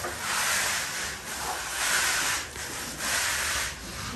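A plastering tool scraping over fresh cement render on a wall, in long repeated strokes about one a second.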